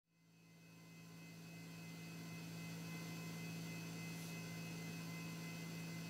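A steady low electrical hum, fading in over the first two or three seconds and then holding even.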